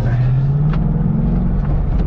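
Ford Mustang GT's 5.0 V8 engine pulling under throttle, heard from inside the cabin. Its note climbs steadily, then drops back about one and a half seconds in, with road noise underneath.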